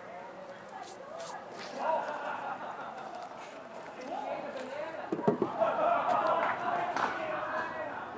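Wooden hive boxes knocking as they are handled and set back in place, loudest in a quick cluster of knocks about five seconds in, with indistinct talk underneath.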